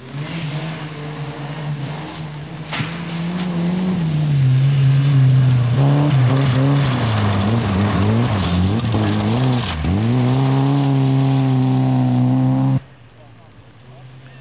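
Rally car engine at high revs as a white Volkswagen Golf Mk2 drives flat out past on a gravel stage, growing louder as it approaches. Its pitch dips and recovers twice before holding steady and high. The sound cuts off suddenly near the end.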